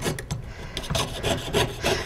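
Jeweler's saw with a very fine 2/0 blade cutting thin 24-gauge copper sheet on a wooden bench pin, in quick, even up-and-down strokes.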